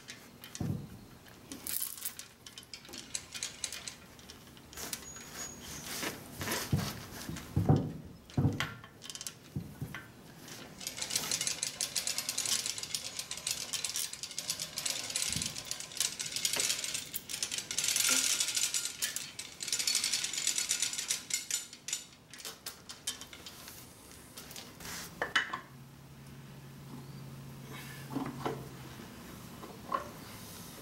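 Hand chain hoist being worked: metal chain links clattering and ratcheting through the hoist, with scattered clanks and knocks of the hanging steel casting against the machine. The rattling runs for several seconds in the middle, with a faint low hum near the end.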